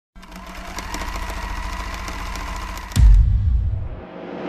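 Sound-design intro ident for a record label's logo: a rapid mechanical clicking rattle with a steady tone underneath. About three seconds in it gives way to a sudden loud, deep boom that fades out.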